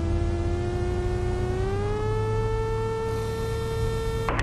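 Cessna Skycatcher cockpit sound on the landing roll: a low steady drone with a thin whine above it. The whine steps up in pitch a little under two seconds in, then holds.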